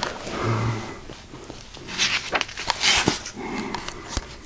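Paper pages of a hardcover textbook being turned and handled, rustling and sliding in a few short bursts around the middle. There is a brief low hum about half a second in.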